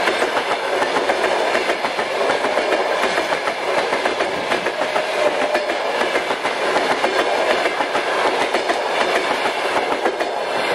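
Passenger train coaches rolling past at speed, their wheels clattering steadily over the rail joints, with the last coach going by at the end.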